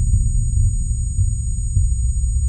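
Film sound design simulating sudden hearing loss: everything is muffled into a dull low rumble, as if heard through blocked ears, with a thin, steady high-pitched ringing held over it.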